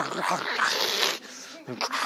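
A man imitating dogs growling with his voice: a harsh, raspy snarl lasting about a second, then a brief second growl near the end.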